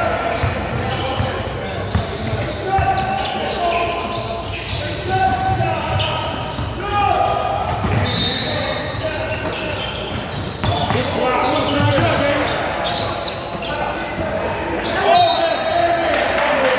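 Basketball game in a large gym: a ball bouncing on the hardwood floor, scattered sharp knocks, and players and spectators calling out, all echoing in the hall. A short high referee's whistle sounds near the end.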